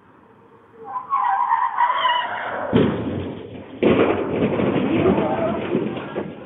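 A vehicle in a parking lot with loud, rough noise that starts suddenly about three seconds in and again a second later, with dust rising at a pickup's wheels; voices can be heard over it.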